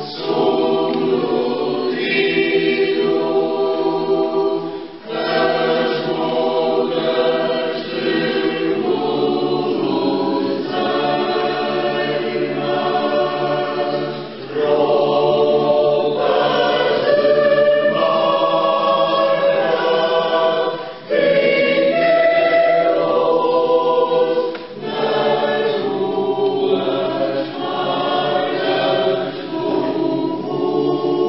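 Polyphonic choir singing a Christmas song in Portuguese, in long sustained phrases broken by short pauses every few seconds.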